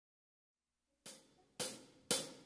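Drumsticks striking a Sabian hi-hat twice, about half a second apart, beginning about a second in. The second strike is louder and each rings briefly: a drummer's tempo count-in.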